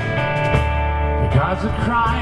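Live country-tinged southern rock band playing between sung lines: strummed acoustic guitar, electric guitar and drum kit with cymbals, over a steady low end.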